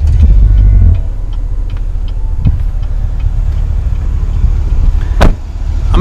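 Low rumble with scattered small clicks and knocks, then one sharp thump about five seconds in: a door of the 2016 GMC Yukon Denali being shut.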